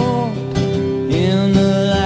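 Strummed acoustic guitar chords with a male voice singing long notes that slide up and down between pitches, without clear words.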